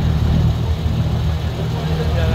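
A boat's engine running steadily, a constant low drone.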